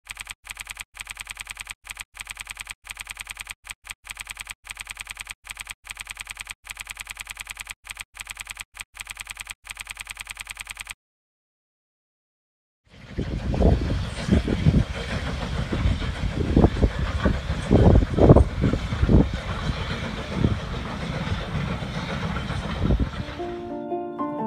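A rapid, evenly repeating typing-style clicking sound effect for about eleven seconds, then silence. After that, a train passing outdoors, heard as a low rumble with irregular surges. Soft piano music starts right at the end.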